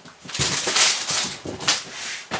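Cardboard boxes and packaging being shifted and handled on a table: scraping and rustling in a few noisy bursts lasting about a second and a half.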